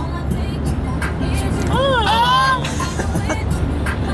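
Steady low road and engine rumble inside a moving car's cabin at motorway speed. A voice slides up and then down in pitch about two seconds in, over music with scattered clicks.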